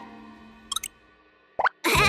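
Cartoon sound effects: music fades away, then two soft ticks come about three quarters of a second in. Near the end a short rising plop sounds, just before a louder sound begins.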